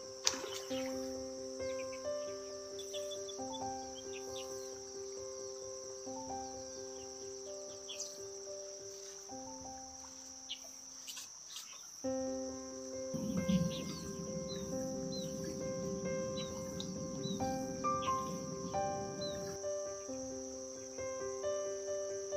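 Background music of slow, held single notes over a steady high-pitched insect drone. The music breaks off for a moment near the middle, and a low rushing noise runs for several seconds in the second half.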